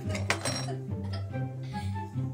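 Background music with a steady beat, and about a third of a second in, one sharp, ringing clink: the jar stuck on a kitten's head knocking against a hard surface.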